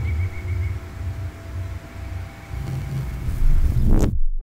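A low, uneven rumble that swells near the end, with a faint pulsing tone dying away in the first second.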